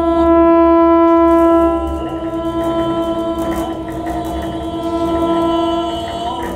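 Live experimental music: one long, steady held note, rich in overtones, over a low drone that drops away about two seconds in.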